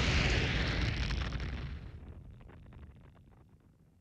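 Tail of an explosion sound effect as a self-destructing message blows up: a loud rush and rumble dying away, the hiss going first, then a low rumble with scattered crackles that fades out about three and a half seconds in.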